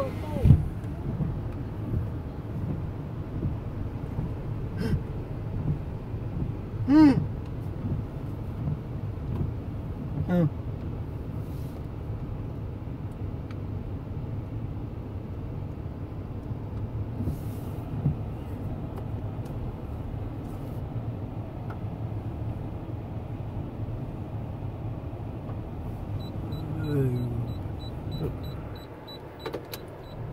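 Steady low rumble of a car engine, heard from inside the cabin as the car idles and creeps forward into an automatic car wash bay. A few short voice-like calls come through, and near the end a quick run of high beeps.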